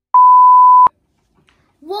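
Television colour-bars test tone: one loud, steady beep at a single pitch, lasting about three-quarters of a second and ending abruptly with a click.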